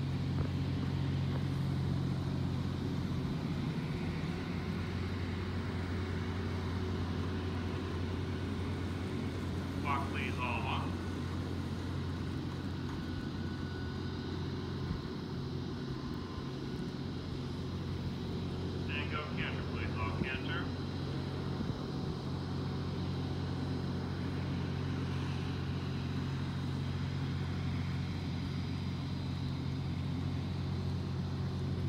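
A steady low mechanical hum, like a motor running, throughout. Two brief snatches of a distant voice come through, about a third and two thirds of the way in.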